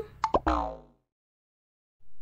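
Cartoon sound effect: a couple of quick pops followed by a short downward-sliding tone that fades out within the first second.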